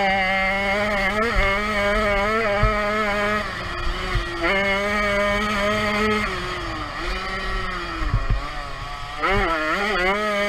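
Jawa 50 Pionýr's single-cylinder two-stroke engine racing at high revs. It is held steady, then backed off briefly about a third of the way in. It eases off with falling revs through the second half and revs sharply back up near the end.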